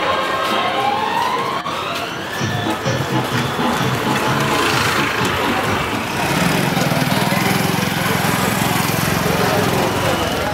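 Busy street noise of a vehicle engine and people's voices, with music mixed in. A rising, siren-like whine runs through the first two seconds, and a steady engine note comes in about six seconds in.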